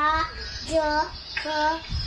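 A young child's voice sounding out syllables in a drawn-out, sing-song way, three syllables in a row.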